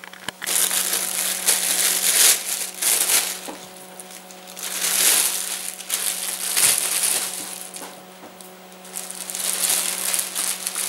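Thin plastic freezer bags crinkling and rustling as raw steaks are bundled into them by hand, in three spells with short lulls between, over a faint steady hum.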